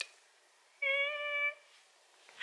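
A single steady pitched tone with even overtones, lasting under a second, about a second in; the rest is dead silence.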